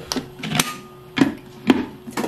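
Plastic blender jar and lid clacking as the lid is pressed on and the jar is set onto the motor base: four sharp clacks about half a second apart.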